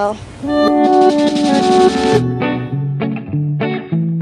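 Background music comes in about half a second in: first a run of held pitched notes, then from about two seconds in a string of short, separate plucked notes in a steady rhythm.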